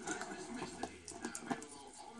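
Quiet handling sounds of PTFE thread-seal tape being wrapped onto a cable end, with a few light clicks.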